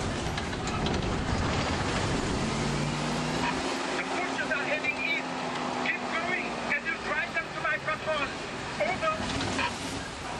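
Open safari truck rumbling along a rough dirt track, its low engine and road noise dropping away about three and a half seconds in; then passengers' high-pitched voices call out in short excited cries.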